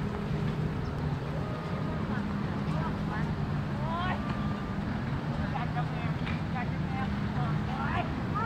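Steady low drone of motorboat engines running offshore, with scattered distant voices of people on the beach.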